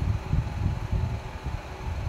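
Steady background noise in a small room: a low, irregular rumble with a faint hiss above it.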